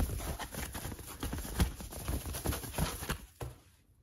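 Handling noise of a matted print being pulled out of its packaging: rustling with an irregular run of light taps and knocks, dying away about three and a half seconds in.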